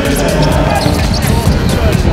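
Live game sound on an indoor basketball court: a basketball bouncing on the hardwood floor amid crowd noise and voices, with music underneath.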